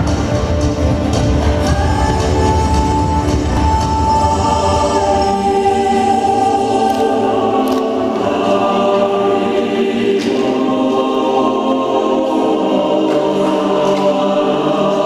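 Slow recorded choral music: voices singing long held notes. A deep low rumble underneath fades out about five seconds in.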